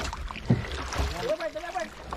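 Water lapping against the hull of a small outrigger boat drifting on calm sea, with two dull knocks on the boat about half a second apart. A man's voice is heard briefly in the second half.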